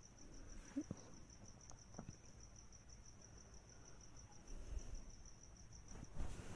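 Near silence: faint room tone with a thin high-pitched tone pulsing about five times a second throughout, and a couple of soft clicks.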